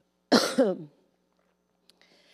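A woman's single short cough into a handheld microphone, a sharp onset followed by a falling voiced tail, lasting about half a second.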